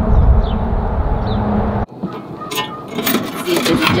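A low outdoor rumble, then after a cut the clicks and rattles of a vintage coin-operated kiddie ride's coin mechanism as it is set going. The ride gives no music.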